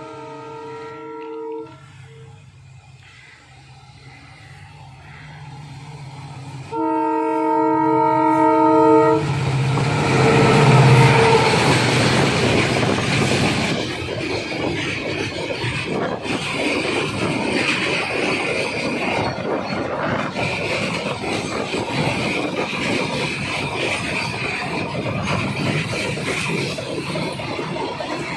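A WDG4D diesel-electric locomotive (16-cylinder two-stroke EMD engine) sounds its horn twice as it approaches: a short blast at the start and a longer one about seven seconds in. Its engine grows loud as it passes a couple of seconds later. Then a long string of RoRo flat wagons loaded with lorries rolls steadily past, wheels clattering over the rail joints.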